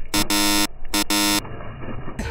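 Game-show style 'wrong' buzzer sound effect: two harsh buzzes of about half a second each, marking a foul or mistake.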